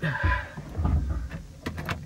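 Handling noise from a camera being moved about inside a car's cabin: rubbing and low bumps, then a few sharp clicks near the end.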